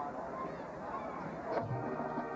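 Stadium crowd noise with scattered high calls, then about one and a half seconds in the marching band comes in, playing loud held chords over a strong bass.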